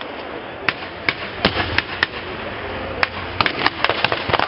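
Scattered blank gunfire in a mock battle: about ten single sharp cracks at irregular intervals over a steady background haze of noise.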